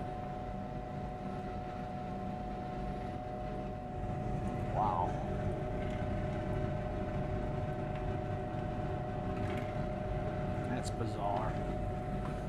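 Steady machine hum with a constant tone over a low rumble, a little louder from about four seconds in, with a couple of brief faint sounds around five and eleven seconds.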